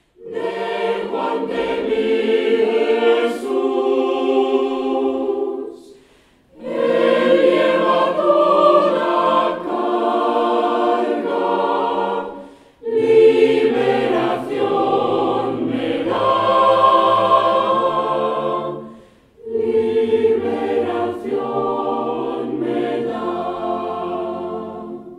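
Mixed choir of women's and men's voices singing in four phrases with short breaths between them; a low bass line comes in partway through.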